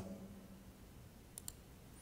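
A quick double click of a computer mouse button, press and release, about one and a half seconds in, against near-silent room tone.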